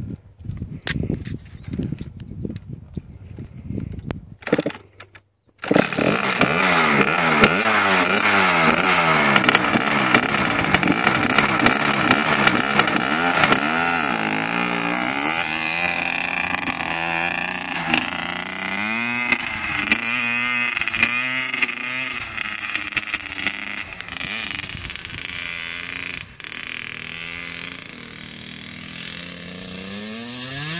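Kawasaki KX60 two-stroke dirt bike: irregular knocks for the first few seconds, then the engine fires suddenly about five seconds in and runs with the revs rising and falling as the bike rides off, getting a little quieter near the end.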